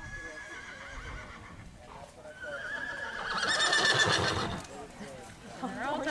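A horse whinnying once: a long, wavering call that starts about two seconds in and fades out near five seconds.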